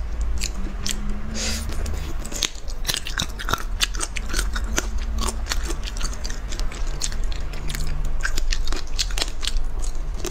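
Close-miked eating sounds: a person chewing and biting spicy food, with a dense run of sharp, crisp clicks and crunches.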